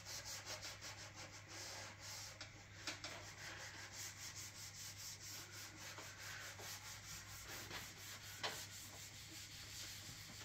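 Cloth applicator pad rubbing finishing oil into a spalted beech board in quick circular strokes: a soft, rhythmic scrubbing of about five strokes a second, faint over a steady low hum.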